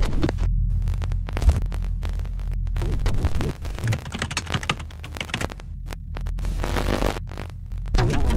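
Glitch sound effects for an animated title sequence: a steady low electrical hum under rapid digital clicks, crackles and bursts of static.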